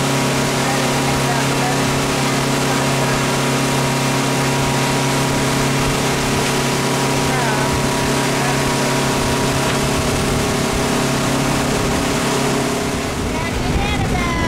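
Motorboat engine running at a steady cruising speed with a constant drone, with water rushing past the hull and wind noise.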